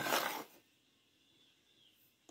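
A short scraping rustle, about half a second long at the start, as a spoon scoops through dry red colorau (annatto) powder spread on a tray; then near silence.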